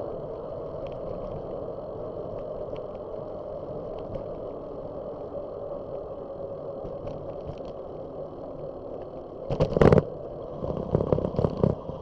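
Steady wind and road noise from a bicycle rolling along a paved street, heard on the bike-mounted camera's microphone. About ten seconds in comes a loud burst of knocks and rumble, followed by a cluster of weaker ones.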